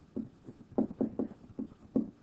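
A stylus tapping and stroking on a tablet screen while handwriting maths: about six short, uneven knocks in two seconds, one for each pen touch-down.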